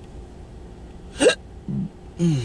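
A person's hiccup, a sudden short vocal burst with a quick upward pitch jump, about a second in. A brief low voiced grunt follows, over a faint steady hum.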